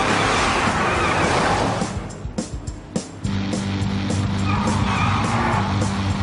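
Animated race cars' engine and tyre-skid sound effects under a music score. The car noise drops away briefly about two seconds in, then a steady low hum comes back.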